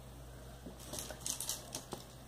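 Faint light clicks and rustles of fingers handling a needle, nylon thread and small acrylic crystal beads, a handful of them in the second half.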